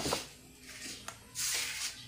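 Refrigerator door being pulled open, with rustling handling noise and a short hissing rustle about one and a half seconds in.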